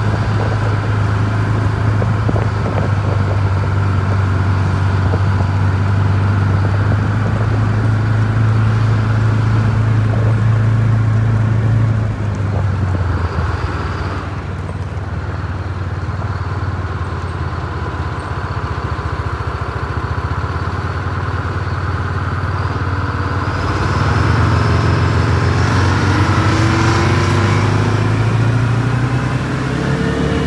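Vehicles driving slowly along a gravel road: a steady low engine drone with tyre and road noise, easing off about twelve seconds in and picking up again about twenty-four seconds in, with a rising whine near the end.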